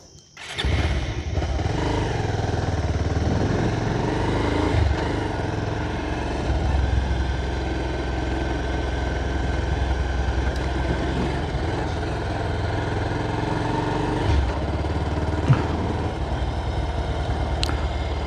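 Motorcycle engine starting suddenly about half a second in, then running steadily as the bike rides off.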